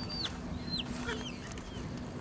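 Bird calls: a few short, high notes, each sliding down in pitch, in the first second, over outdoor background noise and a steady low hum.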